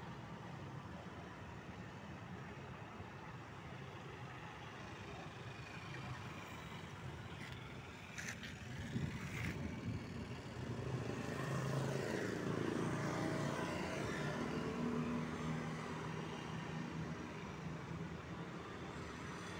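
Outdoor background noise with a motor vehicle running nearby. Its engine swells from about ten seconds in and eases off near the end. A few sharp clicks come just before the swell.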